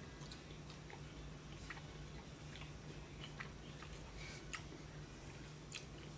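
Faint chewing and small mouth clicks from a person eating a bite of Ski Queen gjetost, a soft Norwegian brown goat's-milk cheese.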